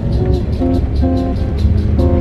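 Background music: a gentle tune of plucked guitar notes over a low, steady bass.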